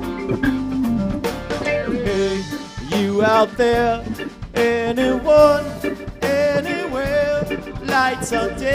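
A live band playing a song, with electric guitars, bass and a drum kit. About three seconds in, a wavering lead melody rises above the band.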